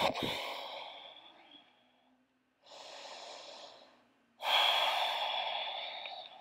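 A person breathing slowly and audibly through the nose: three long breaths, the first and last louder, the middle one quieter.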